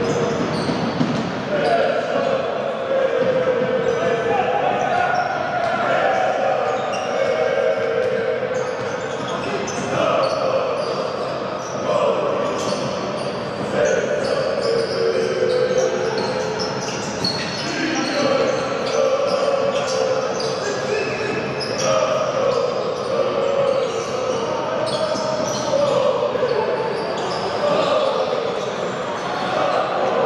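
Basketball being dribbled on a hardwood court during live play, the bounces ringing in a large hall over a steady din of voices.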